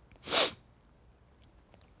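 A man's single short, sharp breath through the nose, a little under half a second in, followed by quiet room tone.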